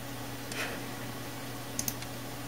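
A computer mouse button clicked once near the end, a quick press-and-release pair of sharp clicks, over a steady low hum and room hiss.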